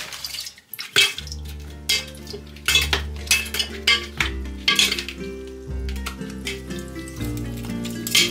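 Strawberries dropped one at a time into a glass pitcher onto ice cubes, each landing with a sharp knock or clink against the ice and glass, roughly once a second. Instrumental background music plays underneath.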